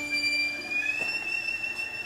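Solo viola sounding a high, thin bowed tone that glides slightly upward about midway and then holds, while the lower note beneath it fades away.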